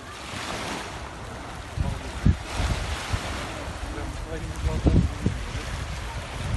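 Wind buffeting a phone's microphone in gusts, the strongest about two seconds in and near five seconds, over the wash of small waves on the shore.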